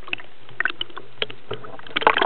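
Scattered sharp clicks and knocks picked up underwater, a few per second, over a steady low hum.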